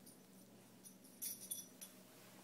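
Metal tags on a Labrador retriever's collar jingling in a few short, faint shakes, starting about a second in.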